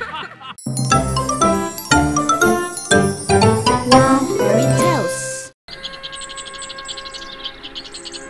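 Channel logo jingle: a bright melodic run of chiming notes that climbs in a rising sweep and cuts off suddenly about five and a half seconds in. Soft, steady background music with a fast high twittering follows.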